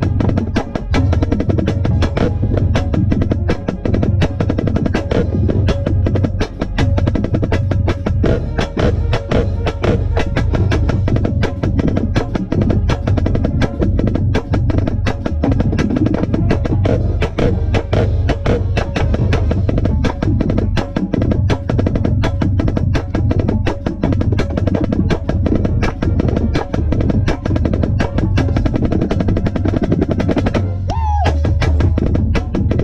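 Marching snare drum heard right at its drumhead, played in fast, dense stick strokes and rolls, with the rest of the marching band playing loudly around it.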